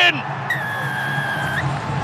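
A referee's whistle gives one steady blast of about a second, signalling the try, over the crowd's background noise.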